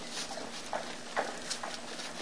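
Dog lapping water from a bowl: a few irregular wet laps.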